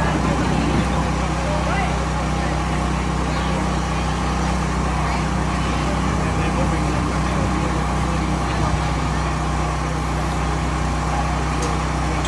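A steady low engine-like hum runs under indistinct voices of people talking in the background.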